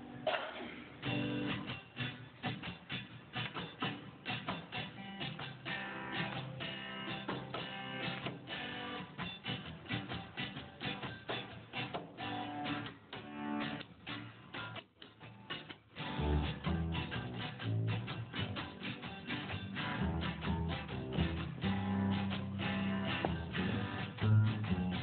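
Acoustic guitar strummed in short, choppy ska-style strokes, with upright double bass notes coming in about two-thirds of the way through.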